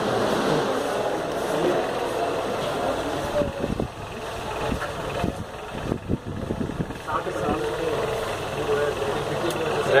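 Busy market background: indistinct overlapping voices over a steady low hum, with a few short knocks in the middle.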